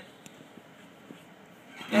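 A quiet pause: faint room tone with a couple of small ticks, and no guitar playing.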